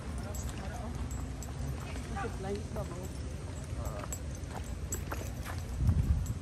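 Footsteps in sandals on a paved walkway, a light irregular clatter, with faint voices in the background.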